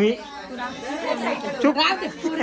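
Several women's voices chattering over one another, with no other clear sound.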